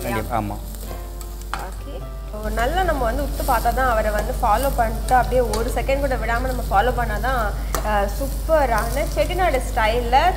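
A slotted stainless steel spoon stirring and scraping chopped onion and dried chillies frying in oil in a steel kadai, over a steady sizzle. The scraping strokes start about two and a half seconds in and repeat in quick strokes.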